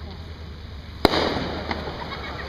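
Aerial fireworks: one sharp bang about a second in, followed by a short spell of crackling, and a smaller pop near the end.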